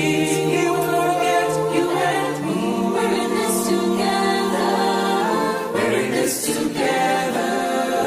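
Unaccompanied choir singing slow, sustained chords. The bass note steps up about two and a half seconds in and drops again near six seconds.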